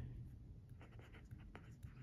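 Faint scratching and light ticks of a stylus nib writing on the glass screen of an e-ink tablet.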